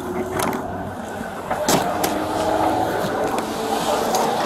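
Rustling and knocking of upholstered deck cushions being pressed and moved right against a body-worn camera's microphone, with a few sharp knocks, the loudest a little under two seconds in, over steady background noise.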